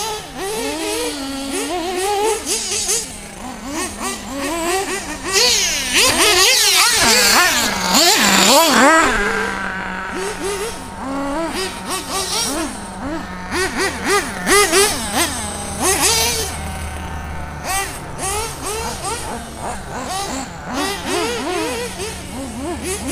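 Several radio-controlled cars running on a track, their motors revving up and down quickly with the throttle. They are loudest around six to nine seconds in.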